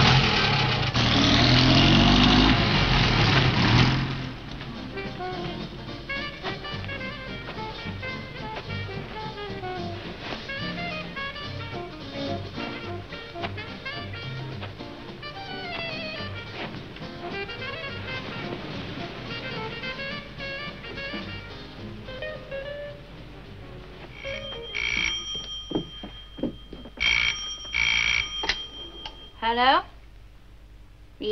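Film score music, loudest in the first four seconds and then softer and melodic. Near the end a telephone bell rings in short double rings.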